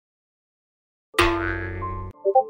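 A comic boing sound effect starts suddenly about a second in after silence and rings for about a second, with a heavy low rumble under it.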